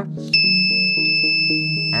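Clothespin door alarm's battery-powered electronic buzzer sounding one steady high-pitched tone. It comes on abruptly about a third of a second in, when the card insulator is pulled from between the peg's contacts and closes the circuit, so the alarm has been triggered. Background music plays underneath.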